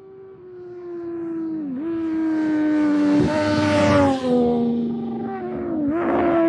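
Race motorcycle engines at high revs, growing louder as the bikes approach. The pitch dips briefly near two seconds in and again near the end as the riders change gear.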